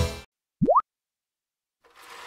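Children's jingle music cutting off, then a single short cartoon 'bloop' sound effect that sweeps quickly upward in pitch.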